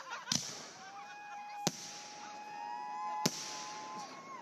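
Fireworks going off: three sharp bangs about a second and a half apart, over a long steady high tone that rises slightly near the end.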